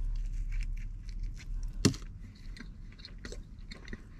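A man chewing a mouthful of bacon double-patty burger close to the microphone: a string of small clicks with one sharper click a little under two seconds in, over a low steady hum.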